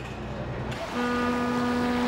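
A ship's whistle sounding one long steady note over a wash of sea and wind noise, after a low rumble that stops under a second in.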